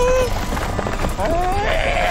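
A cartoon character's wordless vocal sounds: a few short voice-like calls and grunts that slide up and down in pitch, over a steady low rumble.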